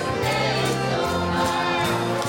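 Gospel song sung by a woman leading into a microphone with a praise team of singers behind her, over amplified instrumental accompaniment with held low bass notes.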